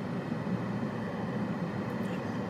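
Steady low rumble of road traffic or a moving vehicle, with no voices.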